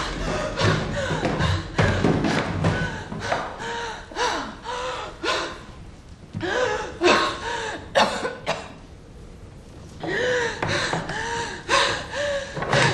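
A woman's short, strained gasps and groans, one after another, with a quieter pause about two-thirds of the way through.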